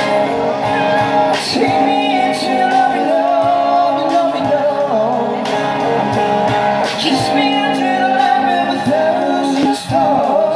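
A live rock band playing a song on electric guitars through small amplifiers, with a cajon and cymbal percussion and a singing voice.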